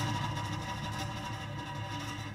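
Improvised solo guitar music: sustained ringing tones slowly fading away over a steady low tone underneath.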